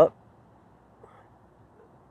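A man's voice finishing one word at the very start, then quiet outdoor background with a faint tick about a second in.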